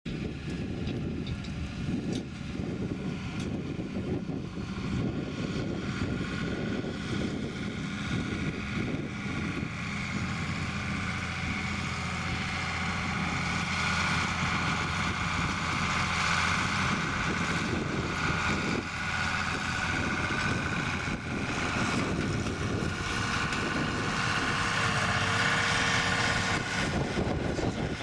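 Case 2090 tractor's 8.3-litre six-cylinder diesel engine running steadily under load while pulling a harrow across the field. It grows louder through the middle as the tractor comes past.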